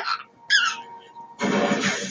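A baby laughing in short bursts, with a high squeal about half a second in and a long, raspy, breathy laugh starting near the middle.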